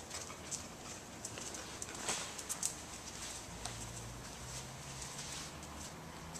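Irregular sharp ticks and taps of a dog's claws and footsteps on a bare concrete floor, most of them around two seconds in. A low steady hum comes in a little past halfway.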